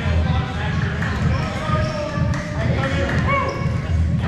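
Players' voices calling and chattering in a gymnasium, with dodgeballs bouncing on the court floor.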